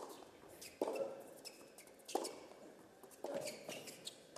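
Tennis rally on a hard court: the ball is struck back and forth by racquets, a sharp pop about every second, four times.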